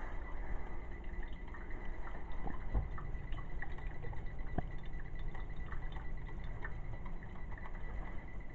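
Drip coffee maker brewing: water gurgling and dripping into the glass carafe, with scattered small drips and a faint steady high tone.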